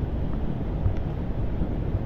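Steady low rumble of vehicle noise with wind buffeting the microphone.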